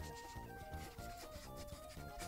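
Ohuhu paint marker tip rubbing back and forth on paper in short repeated strokes, over light background music with a simple stepping melody.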